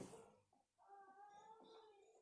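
Near silence, with a faint drawn-out animal call in the background, starting about half a second in and lasting a little over a second.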